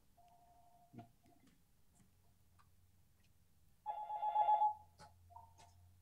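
A telephone ringing, fairly faint: a short ring near the start, a louder ring about four seconds in, and a shorter one just before the end. There is a single click about a second in.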